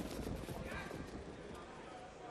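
Hoofbeats of harness-racing trotters on the dirt track, a quick run of clatter strongest in the first second and then thinning out.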